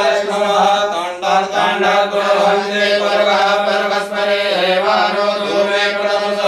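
Sanskrit mantra chanting in a continuous melodic recitation, over a steady low drone.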